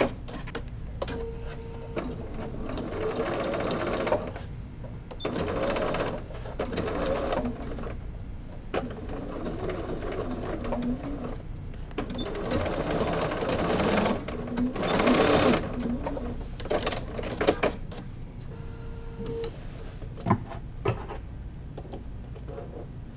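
Electric sewing machine stitching binding onto thick quilted fabric layers, running in several stretches of a few seconds with short pauses between them. A few sharp clicks come near the end.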